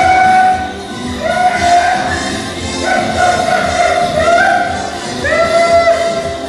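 A chanted song in long held notes, each one sliding up at its start, sung over steady hand-drum beats by a traditional Carnival masquerader.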